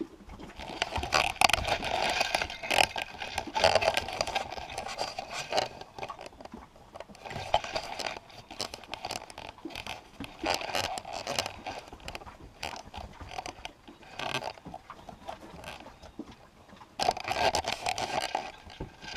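Piglets nosing and mouthing at a camera in straw bedding, heard as close scraping and rustling against the microphone in irregular bursts. It is loudest in the first few seconds and again near the end.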